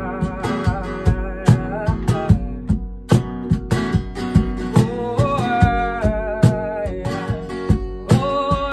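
An acoustic guitar strummed and a cajón slapped in a steady beat, with a man singing over them and holding one long note past the middle.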